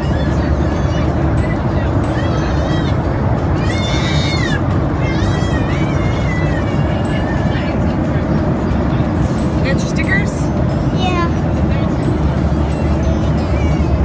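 Steady jet airliner cabin drone. Over it come high, bending pitched tones through the first half and again briefly about ten seconds in.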